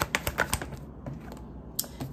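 A deck of tarot cards being shuffled by hand: a rapid run of card clicks in the first half second, then quieter handling.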